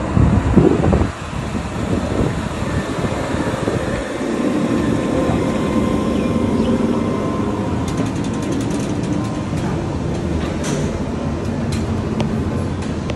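Steady low rumble of background noise with a faint hum, opening with a few loud low thumps in the first second and a scatter of light clicks near the end.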